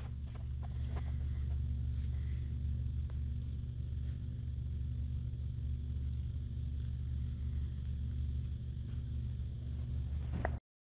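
A steady low hum runs at an even level, with a few faint soft clicks.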